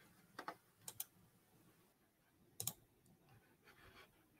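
Faint clicks of computer keyboard keys, three quick pairs in the first three seconds, over near silence.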